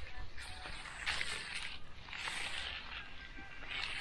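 Magnesium hand float scraping across the surface of fresh, still-plastic concrete, a few soft swishing strokes about a second apart.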